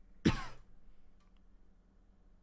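A man clears his throat once, a short sharp burst about a quarter of a second in, followed by quiet room tone.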